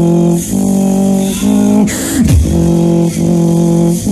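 A beatboxer performing a drop through a loud PA, with held, pitched bass hums that step between notes, sharp hissing snare-like hits and a falling pitch sweep, in a phrase that repeats about every two seconds.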